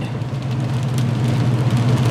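Vehicle cabin noise while driving slowly on a wet road in heavy rain: a steady low engine drone with a hiss of tyres and rain.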